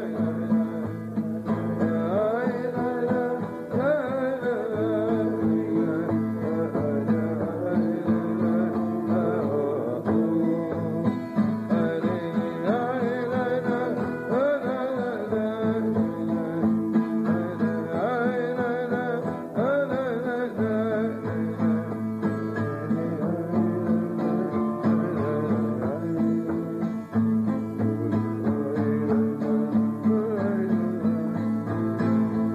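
A man singing a melody while strumming chords on an acoustic guitar.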